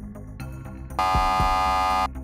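Game-show buzzer: a loud, steady electronic tone that starts abruptly about halfway in and lasts about a second, marking a contestant buzzing in to answer. Background music with a steady beat plays throughout.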